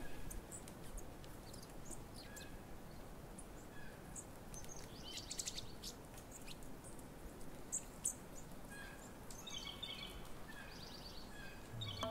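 Faint outdoor background with scattered small bird chirps, including a couple of quick trills, one near the middle and one near the end.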